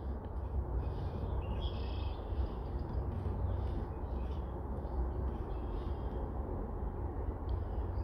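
Outdoor background: a steady low rumble of wind on the microphone, with faint bird calls in the distance.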